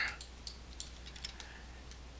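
A few faint, scattered clicks from a computer's mouse and keyboard, over a low steady electrical hum.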